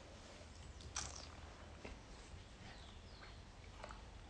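Near-silent room tone with a faint low hum while wine is sipped from a glass, broken by one faint short click about a second in.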